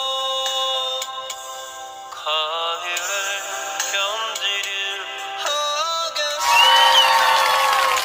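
A man singing a Korean ballad over a backing track. Near the end it turns louder, with crowd noise coming in.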